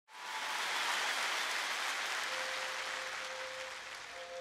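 Theatre audience applauding, the clapping slowly dying away. A faint held musical note comes in about halfway through.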